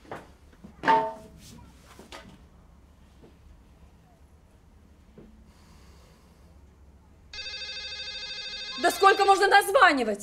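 A phone ringtone, a steady electronic multi-tone ring, starts about seven seconds in and keeps going, with a voice speaking over it near the end. Before it there are only a few short knocks, the loudest about a second in.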